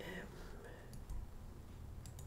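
A quiet pause with a low, steady room hum and a few faint, short clicks.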